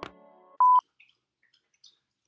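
The last notes of the guitar outro music ring out and fade, then a single short electronic beep at one steady pitch sounds just over half a second in, louder than the music.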